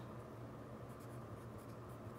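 Mechanical pencil writing on lined paper: faint, irregular scratching strokes of the lead as a word is written.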